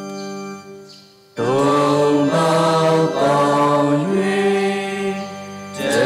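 Church organ holding a chord that dies away, then about a second and a half in, voices come in singing a sung church prayer or hymn over sustained low organ-like tones.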